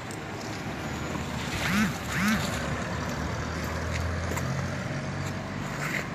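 Street background with a vehicle engine running low and steady through the middle and latter part, and two short voice sounds from someone off-mic about two seconds in.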